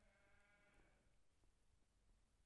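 Near silence, with one faint pitched call lasting about a second at the start.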